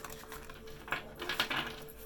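A deck of oracle cards being shuffled by hand: a quick run of light card flicks and clicks, busiest about a second in.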